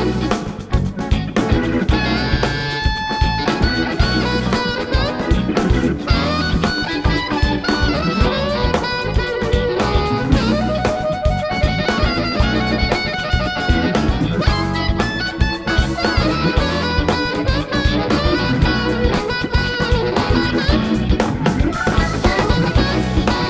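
Live electric blues band playing an instrumental break: electric guitar lead over drum kit, bass and keyboard, with a steady beat.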